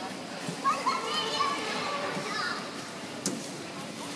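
A child's high-pitched voice calling out for about two seconds, with a single sharp knock a little after three seconds in.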